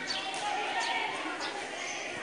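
Indistinct background voices, with several brief high-pitched chirps.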